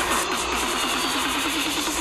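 Loud electronic dance music playing in a crowded bar, driven by a low buzzing synth note repeated about eight times a second.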